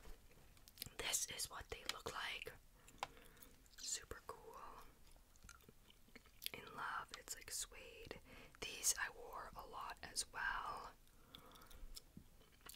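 Soft, close-miked whispering in short phrases, with short clicks and taps between them.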